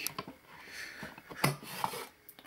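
Circuit board being pulled out of its card-edge connector: rubbing and scraping as the board edge slides free, with small clicks and a knock about one and a half seconds in.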